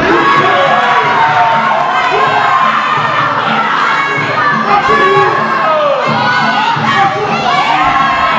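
Fight crowd shouting and cheering, many voices yelling over one another without a break.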